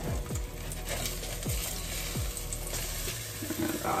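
Pancakes sizzling in vegetable oil in a frying pan, with background music playing over it.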